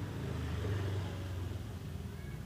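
A low, steady engine-like hum, a little louder around the middle.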